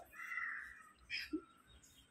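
Faint cawing of a crow: one drawn-out harsh call, then a shorter one about a second in.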